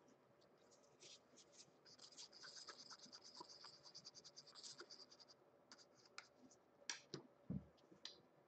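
Faint dry scratching and crackling from gloved hands handling things at the painting, dense for a few seconds, then a few scattered clicks and a soft thump near the end.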